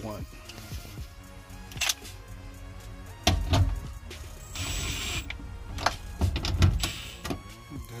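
Milwaukee M12 Fuel cordless ratchet running in several short bursts, driving down the nuts on a fuel pump cover plate, over background music.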